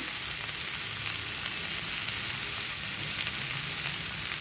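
Zucchini rounds frying in oil in a grill pan on medium heat: a steady sizzling hiss with fine crackles.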